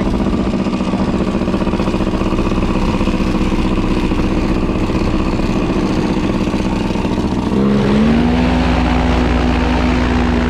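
Paramotor engine and propeller idling steadily close by, then throttled up a little about three-quarters of the way through to a slightly higher, steadier note that holds.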